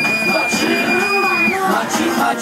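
Dance music at a party, with a long high held note that breaks off about one and a half seconds in, over the chatter and shouting of the crowd.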